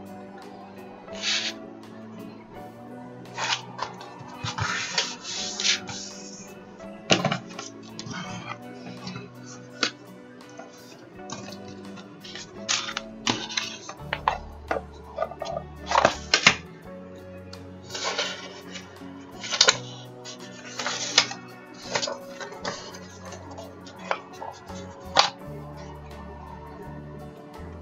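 Background music over sheets of plain paper being folded in half by hand: short, crisp rustles and creases every second or so.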